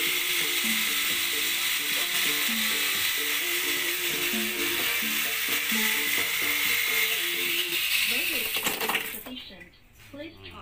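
Handheld rotary grinder running steadily as it grinds out the ports of a Yamaha RX-King two-stroke cylinder, a high hiss with a thin whine, heard under background music with a stepping melody. Both cut off about nine seconds in.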